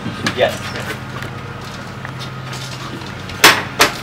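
A door being opened: two sharp knocks from the latch and door close together near the end, over a steady low hum.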